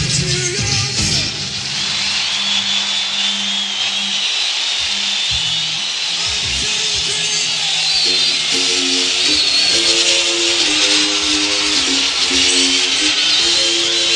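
Live stadium concert from an audience recording. The band's playing drops away about a second and a half in, leaving crowd cheering and whistling over a held low note. About eight seconds in, a repeating pattern of short notes starts the next song.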